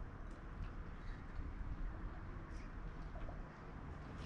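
Quiet outdoor background: a low steady rumble with a few faint, scattered high ticks.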